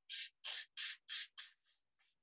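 Paintbrush making short strokes on watercolour paper: about six quick scratchy dabs, roughly three a second, as dark marks are laid down, growing fainter near the end.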